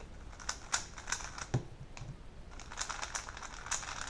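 A new 3x3 speedcube being turned quickly by hand: a quick, irregular stream of plastic clicks and clacks as the layers snap round. The cube has not yet been broken in or lubed, and its plastic is hard.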